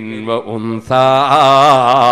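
A man's voice going from short spoken phrases into a loud, drawn-out melodic chant about a second in, its pitch wavering on held notes, in the manner of Quranic recitation within a sermon.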